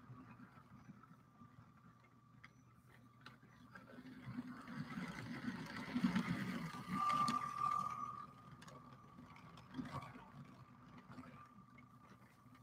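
Motorized LEGO trains running on plastic track: a faint motor whine with wheel clatter that swells as a train passes close, about four to eight seconds in, then fades.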